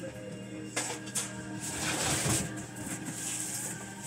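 Faint knocks and rustling of a heavy cardboard shipping box being handled and carried, over a steady low hum.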